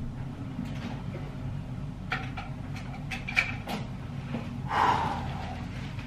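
A door opening into a dark room: a few faint clicks and knocks, then a brief rustle near the end, over a steady low room hum.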